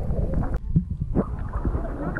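Indistinct voices over a steady low rumble, with a few sharp knocks.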